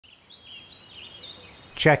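Faint birdsong: a few short, wavering chirps over a light outdoor ambience, before a man's voice comes in near the end.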